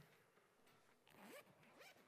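A click at the start, then a faint zipper being drawn open on a zippered book cover about a second in.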